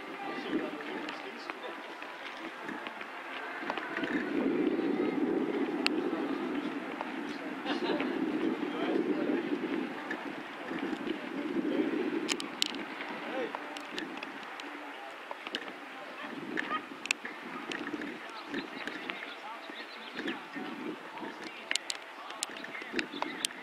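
Indistinct voices of people talking in the background, loudest in the middle stretch, with scattered sharp clicks.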